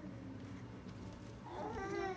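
A baby's short, high, wavering vocalization near the end, after a quieter stretch.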